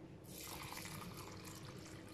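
Water poured from a clear plastic glass into a bowl of dry rice and chopped vegetables: a faint, steady splashing trickle that begins a moment in.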